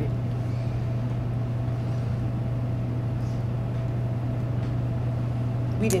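Steady low hum of room noise, unchanging throughout, with a faint thin higher tone above it.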